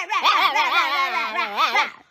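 A baby laughing in a long run of high-pitched, wavering giggles that cuts off abruptly just before the end.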